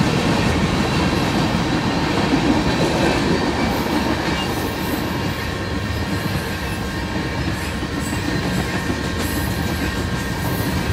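Freight train cars rolling past: a steady rumble and clatter of steel wheels on the rails, easing slightly in loudness about halfway through.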